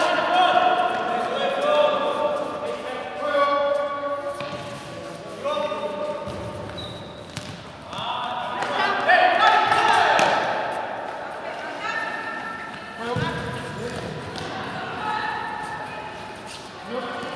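A futsal ball kicked and bouncing on a hard indoor court, a few sharp thuds, under raised voices of players and onlookers calling out, in an echoing gym.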